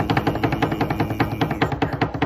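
A drum roll: rapid, evenly spaced strikes, about a dozen a second, held steady.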